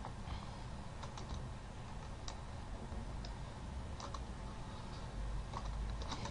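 Quiet, scattered clicks of a computer keyboard and mouse as the software is worked, about eight in six seconds with no steady rhythm, over a faint low hum.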